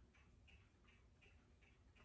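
Near silence: room tone with faint, regular ticking, about three ticks a second.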